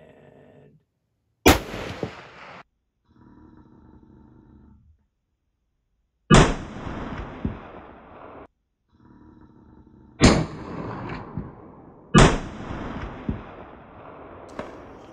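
Four high-powered bolt-action rifle shots from a bench, including a Forbes .30-06 with no muzzle brake, each a sharp report followed by a second or two of echo dying away. The shots are spaced unevenly, the last two about two seconds apart.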